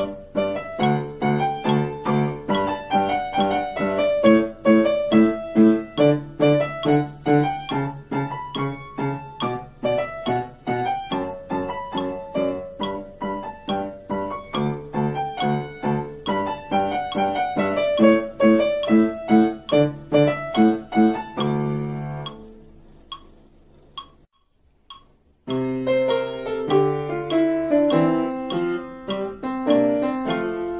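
A Yamaha upright piano playing a practice exercise, a steady stream of notes over a repeating bass figure. About two-thirds of the way through, the piece ends on a chord that rings out and dies away. After a brief silence, a new piece starts.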